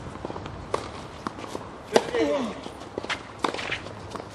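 Tennis rally on a hard court: sharp pops of the ball coming off the rackets and bouncing, a few per second. The loudest crack comes about two seconds in and is followed by a short vocal sound falling in pitch.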